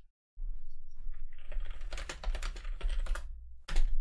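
Typing on a computer keyboard: a quick run of key clicks, then a pause and a louder click near the end, over a low hum.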